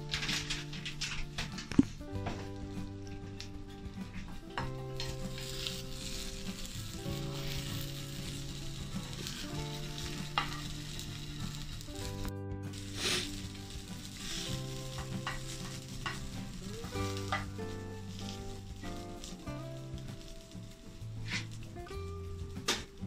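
Omelette sizzling in a nonstick frying pan, with a spatula scraping against the pan as it is folded and a sharp click just under two seconds in. Soft background music with slowly changing chords plays underneath.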